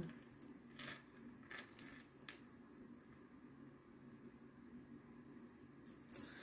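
Near silence, broken by a few faint, light clicks in the first half, from metal jewelry being handled.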